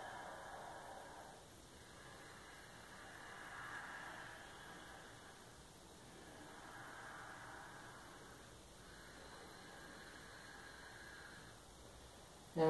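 Faint, slow breathing of a person holding a yoga pose: about four long breaths, each swelling and fading over a few seconds.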